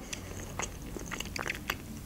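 A person chewing a mouthful of food with the mouth closed: quiet, irregular mouth clicks.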